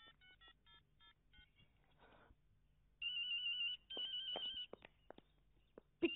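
Mobile phone keypad beeping as a number is dialled, about seven quick key tones, then a phone ringing with a warbling electronic trill in two bursts that are much louder than the dialling.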